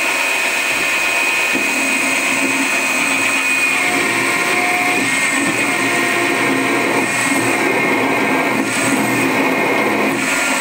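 Milling machine spindle running steadily with a high whine while a small drill bit in its chuck cuts starter holes in a metal block.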